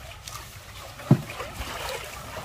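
Water scooped and poured from a plastic dipper over a young elephant standing in a plastic tub, splashing, with one short low thump about a second in.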